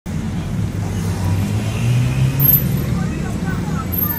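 City traffic ambience: a steady low rumble of road traffic, with indistinct voices mixed in.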